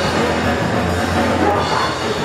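Hardcore punk played live by a bass-and-drums duo: electric bass and a drum kit going loud and dense without a break.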